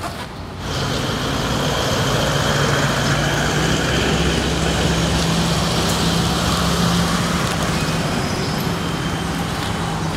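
A motor vehicle's engine running steadily with a low hum under a broad rush of noise, starting a little under a second in.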